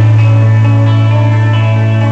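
Live band music between sung lines, with electric guitar sustaining notes over a low note held steady underneath.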